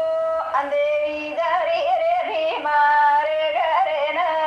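Banjara folk song: a woman singing an ornamented melody over a steady held drone, with no break in the sound.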